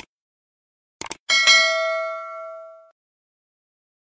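Sound effects for an animated subscribe button. Quick double mouse clicks come at the start and again about a second in, followed by a bright notification-bell ding that rings out and fades over about a second and a half.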